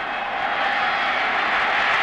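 Football stadium crowd noise, a steady wash that swells louder toward the end as the play unfolds, heard on a TV broadcast soundtrack.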